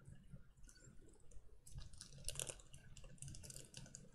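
Faint, irregular small clicks and crackles of a small plastic plant container being handled and unwrapped.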